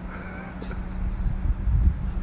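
Steady low engine hum of street construction machinery, with a short bird-like call about half a second in and a burst of low rumble near the end.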